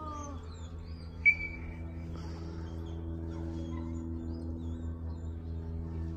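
Small birds chirping over a steady low hum, with one short, sharp, high chirp about a second in that stands out above everything else.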